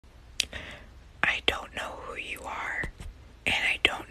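A person whispering.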